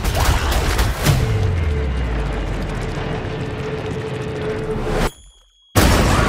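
Cinematic trailer sound design: a clatter of sharp metallic hits, then a heavy impact about a second in with a deep boom that sinks in pitch. A steady rushing rumble with a single held tone follows, cut off suddenly into a brief near silence before a loud sound returns near the end.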